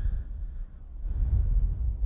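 Wind buffeting the microphone: a low, uneven rumble that dips briefly about half a second in and builds again after a second.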